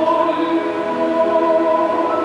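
Choral music: voices holding long, steady notes in a sustained chord.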